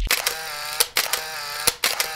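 Intro logo sound effect: a held, slightly wavering electronic tone with about five sharp, camera-shutter-like clicks spread across it.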